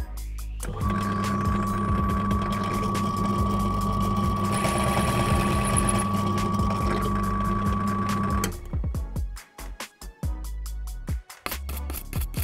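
Small drill press running for about eight seconds with a steady whine, starting about a second in and then switching off, as the bit drills into a Technics 1200/1210 turntable's metal tonearm pivot to deepen the seat for a new bearing. Background music with a beat plays under it.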